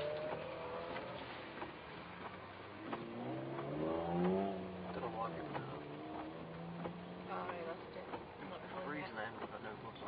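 BMW 330ci's straight-six engine heard from inside the cabin, revving up hard about three to four seconds in and falling back, then running at lower revs with a few light clicks and knocks.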